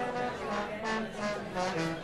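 Brass horns of a live Afrobeat band sounding a few short, quiet notes at changing pitches.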